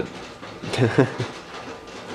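A man laughing briefly: a few short chuckles falling in pitch, about a second in.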